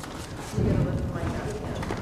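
A microphone being handled and lifted from its stand, giving low knocks and rubbing through the PA.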